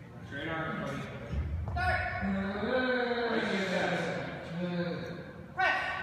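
Men's voices shouting at a bench press: the referee's command "Press", with long drawn-out yells from people around the bench, and a sudden loud shout near the end.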